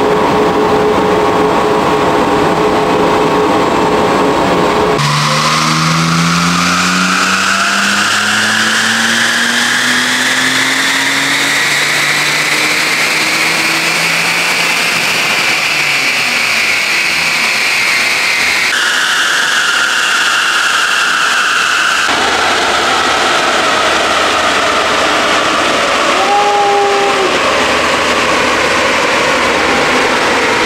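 Supercharged BMW M54 2.5-litre straight-six making a full-throttle dyno pull in fifth gear: engine note and a high supercharger whine climb steadily in pitch for over ten seconds from about five seconds in. Near two-thirds through the throttle is lifted and the note and whine fall away as the rollers run down.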